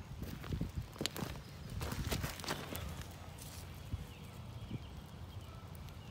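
Footsteps on dry, loose tilled field soil: a run of irregular steps over the first three seconds, then only faint scuffing and handling as the walker stops and crouches.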